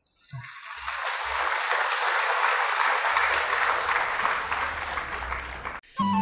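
Audience applauding at the close of a lecture. The clapping swells over the first couple of seconds, holds steady, and is cut off abruptly just before the end.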